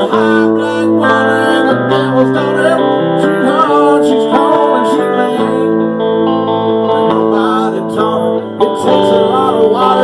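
Live music led by a strummed acoustic guitar, an instrumental passage with a melody line bending in pitch over steady chords.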